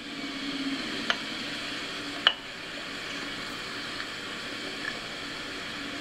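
A steady hiss, with two brief sharp clicks about one and two seconds in.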